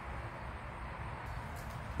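Quiet pause with only faint, steady low background noise: room tone, with no distinct sound event.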